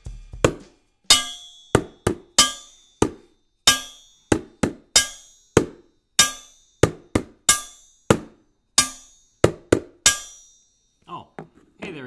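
A wooden spoon drumming on a stainless steel mixing bowl as a home-made drum: about twenty sharp strikes in an uneven rhythm, each with a short metallic ring.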